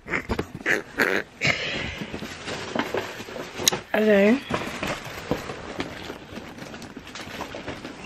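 Indistinct voices with rustling and handling noise from a handheld camera, and a brief voiced sound with a bending pitch about four seconds in.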